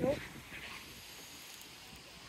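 A voice trails off at the very start, then faint, steady outdoor background noise with no distinct events.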